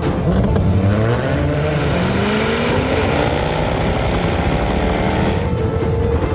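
Jaguar F-Type Coupe's engine accelerating hard, its pitch rising steadily as it pulls away.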